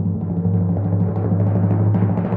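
A drum roll: fast, even strokes on one low pitch, growing a little louder toward the end.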